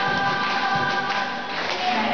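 A women's tuna sings in chorus over strummed guitars and cajón percussion, holding long notes that break up near the end.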